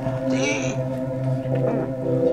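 A man's short, high-pitched wordless cry about half a second in, over a steady background music drone.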